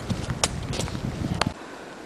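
Rustling and scraping of a person crawling out through dead leaves and twigs from under a rock slab, with two sharp snaps and a low rumble of wind and handling noise on the microphone. It cuts off suddenly about one and a half seconds in, leaving quieter outdoor background noise.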